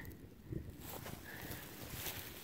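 Faint rustling of dry grass stems against a finger, with a few light ticks.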